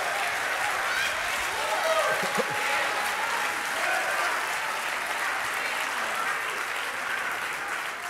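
Church congregation applauding, a steady clapping with scattered voices calling out over it, easing slightly near the end.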